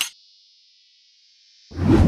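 A camera shutter click at the start, then a high ringing tone held through, and a loud clanging hit about two seconds in: sound effects marking the reveal of the shot.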